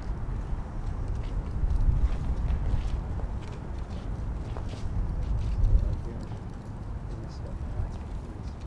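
Wind buffeting the microphone: a gusting low rumble that swells about two seconds in and again near six seconds, with faint scattered clicks above it.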